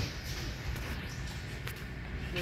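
Low background noise of a large gym room, with a faint single tap near the end.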